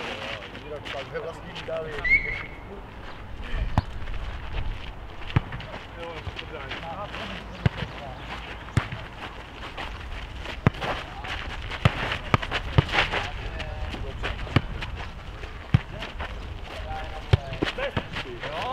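A futnet ball being kicked and headed back and forth and bouncing on the hard court during a rally: a string of sharp thuds at irregular intervals, several a second at the busiest point. Players' voices call out now and then.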